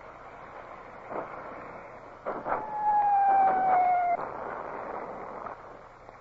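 Radio sound effects of a warship's bow-chaser cannon fire: a dull shot about a second in, then a louder one about two seconds in, followed by a slowly falling whistle of about a second and a half, all over a steady hiss of wind.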